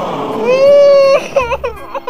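A cartoon character's voice crying: one long, loud wail followed by several short, broken sobs.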